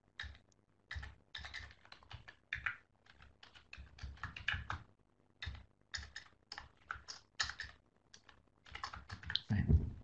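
Typing on a computer keyboard: sharp keystrokes in quick, irregular runs with short pauses between them.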